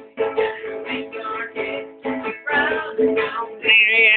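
Acoustic string instrument strummed in a steady rhythm, playing a short instrumental gap in a sung jingle, with singing coming back in near the end.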